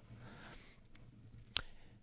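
A pause in a talk: faint room tone, then a single short, sharp click about one and a half seconds in.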